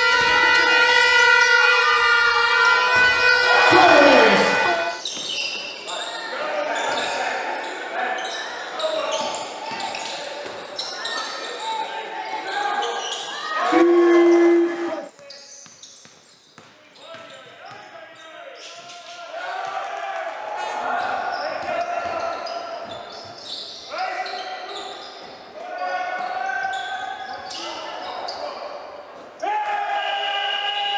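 Live basketball game sound in a gym: the ball bouncing on the court, with voices carrying through the hall. A steady held tone runs through the first few seconds.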